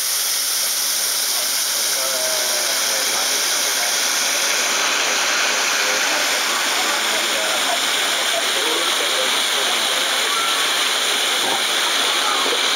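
Food frying in a wok over a gas flame, a steady sizzle with no breaks, with faint voices talking in the background.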